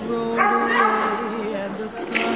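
A song playing: a sung vocal line holding long notes with vibrato over its accompaniment.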